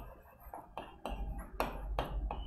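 Marker pen writing on a whiteboard: a quick run of short taps and scratches as the letters are written, with no speech over it.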